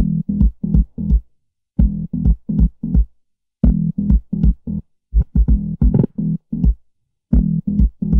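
Synth bass line from an Access Virus B playing on its own: short, pitched low notes in runs of about five, roughly four notes a second, with a silent gap of about half a second between runs.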